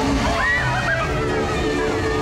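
Loud fairground ride music with voices over it, and a rushing noise underneath.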